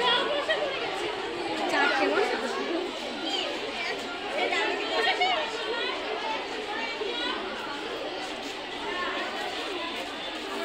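Chatter: several voices talking at once and over one another, none clear enough to make out.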